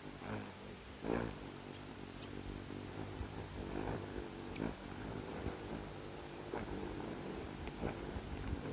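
Wings of several hummingbirds humming as they hover and dart around a nectar feeder. The low hum swells and fades every second or two.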